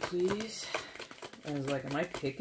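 Talking over a deck of tarot cards being shuffled by hand: quick, crisp card clicks and slaps under the voice.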